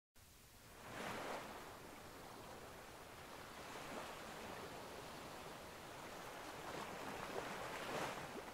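Quiet sea waves breaking on a shore, a steady wash of surf that swells up and dies back every few seconds.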